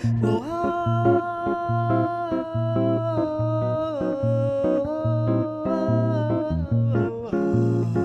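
A woman singing long held notes over a hollow-body archtop jazz guitar playing a bossa nova accompaniment with a steady, rhythmic bass-note pulse. The held vocal note steps down in pitch about halfway through.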